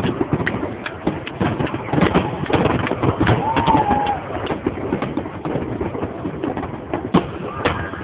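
Aerial fireworks shells bursting in rapid, dense succession: a continuous run of bangs and crackles.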